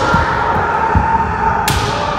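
Kendo practice: sustained kiai shouts from several players, over repeated thuds of bare feet stamping on the gym floor, and one sharp crack of a bamboo shinai strike near the end.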